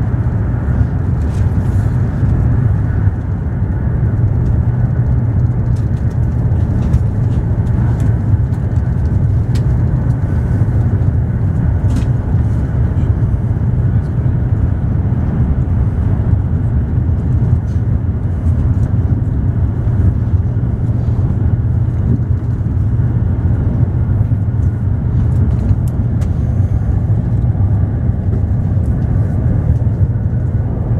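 Steady running noise of a Eurostar high-speed train at speed, heard inside the passenger carriage: a deep, even rumble with a few faint clicks.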